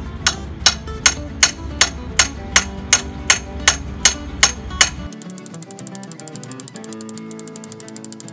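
A hammer pounding a steel T-post into the ground: about thirteen sharp, evenly spaced metal strikes, roughly two and a half a second. They stop about five seconds in, giving way to a much faster run of light ticks, with background music throughout.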